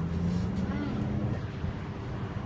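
Low steady hum and rumble, with a faint voice a little after the start.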